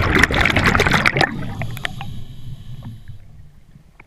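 A scuba diver's exhaled air bubbles from the regulator rushing up past the camera underwater: a loud burst of bubbling for about the first second and a half, trailing off into fainter gurgling bubbles.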